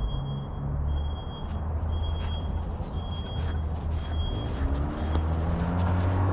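A vehicle's reversing alarm beeping about once a second, five high beeps that stop a little after four seconds in, over a low engine rumble that rises in pitch near the end.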